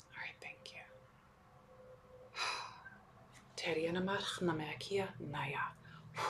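A woman's voice whispering and speaking softly in short breathy phrases, with the fuller phrases in the second half.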